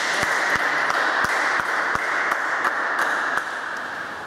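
A few people clapping after a table tennis point is won, a dense patter of irregular claps that dies away about three and a half seconds in.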